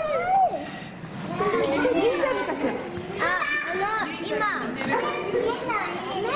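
Several children's voices chattering and calling out at once, high-pitched and overlapping.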